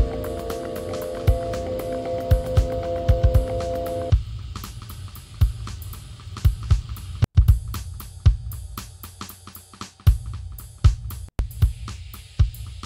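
Generative electronic music: sequenced drum samples (kick, snare and hi-hat) in an uneven, randomised pattern, under sustained reverberant bell tones. The bell tones cut off sharply about four seconds in, leaving the drums alone, which drop out for an instant twice near the end.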